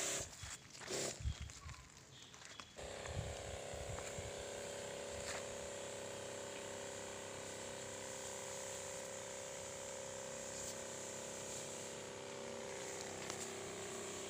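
Battery-powered Robot-brand knapsack sprayer running: a steady pump hum over the hiss of the spray, starting abruptly about three seconds in. Before it come a few scattered knocks and rustles.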